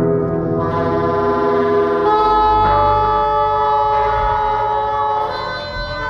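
Live improvised band music: several long held notes sound together as a sustained chord over a steady low bass, with a new, brighter note coming in about two seconds in and fading near the end.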